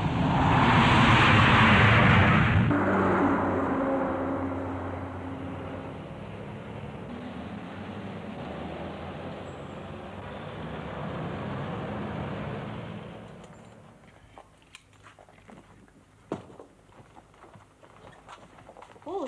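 Jet airliner engines roaring at takeoff, loudest in the first three seconds, then a lower rumble that dies away about thirteen seconds in. A few faint knocks follow near the end.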